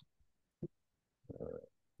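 Mostly quiet: a single soft click, then a short muffled hum of under half a second.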